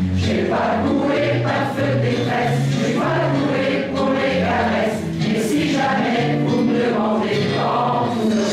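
Mixed choir of men's and women's voices singing together, the sung notes changing every fraction of a second over a low sustained line.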